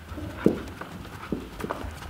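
Footfalls of a German Shepherd puppy and a barefoot person hurrying down carpeted stairs: a run of soft, uneven thumps, the loudest about half a second in.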